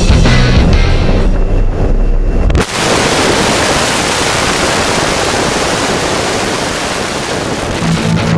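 Rock music with electric guitar cuts off abruptly about two and a half seconds in, giving way to a loud, steady rush of wind and aircraft noise at the open jump-plane door just before a tandem skydive exit.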